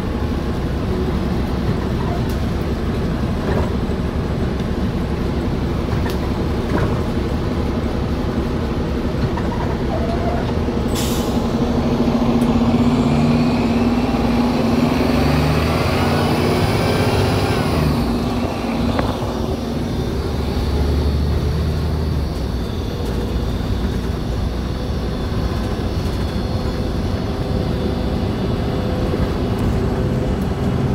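Diesel engine of a 2008 New Flyer city bus running under way, heard from inside the passenger cabin. A short hiss comes about eleven seconds in, then the engine and drivetrain grow louder and rise in pitch for several seconds before settling back to a steady drone.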